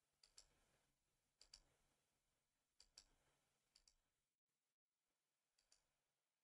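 Very faint computer mouse clicks: five double clicks, roughly a second or so apart.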